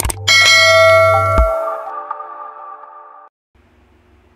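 A mouse-click sound effect, then a bright bell chime that rings and fades out over about three seconds. Under it, the deep bass of an intro beat stops about a second and a half in.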